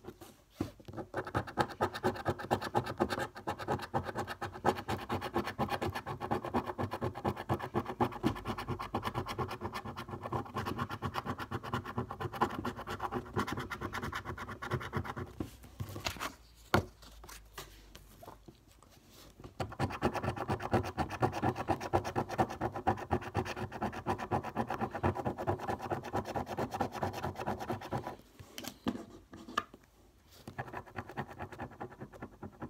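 The silver latex coating is scratched off a paper scratchcard in quick, continuous strokes. The scratching stops for a few seconds about halfway through, then starts again.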